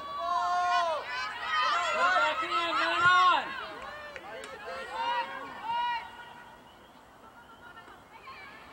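Several voices shouting and calling over one another at a soccer match, loud for about the first six seconds, then dropping to quieter background voices.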